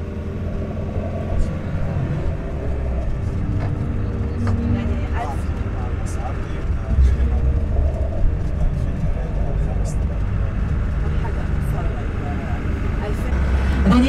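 Low, steady engine and road rumble of a moving bus heard from inside the cabin, with indistinct passenger chatter and a few light knocks.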